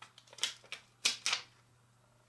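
Thin clear plastic rhinestone-sticker sheet crackling and rustling in the fingers as stick-on gems are peeled off and pressed onto a card: a handful of short, sharp crackles in the first second and a half, then quiet handling.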